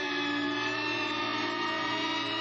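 Synthesized electronic hum of racing light cycles: many steady tones held together, with little change in pitch.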